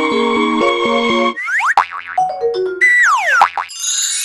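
Electronic closing-theme music cuts off about a second in and gives way to a cartoon-like logo jingle. The jingle has springy sound effects that swoop down and up, a short run of falling notes, and a bright shimmer near the end.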